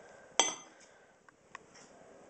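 A table knife clinking against a ceramic plate as it cuts down through a sandwich: one sharp, ringing clink about half a second in, then two faint ticks.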